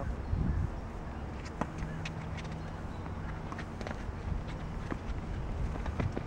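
Tennis ball being served and hit back and forth on an outdoor hard court: scattered sharp pops of ball on racket and court, the loudest about a second and a half in, over a low steady rumble.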